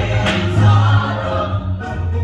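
Live gospel singing: voices led by a man on a handheld microphone, over instrumental accompaniment with a strong, steady bass.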